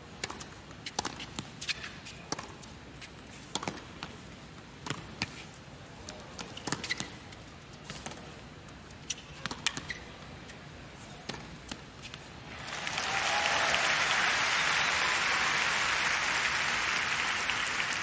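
Tennis rally on a hard court: a ball struck by rackets and bouncing, a sharp crack every second or so. About thirteen seconds in the crowd breaks into steady applause as the point ends.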